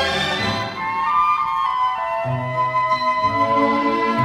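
An orchestral easy-listening instrumental. The full orchestra thins about a second in to a single high melody note, held for about a second, and low sustained accompaniment notes come back in the second half.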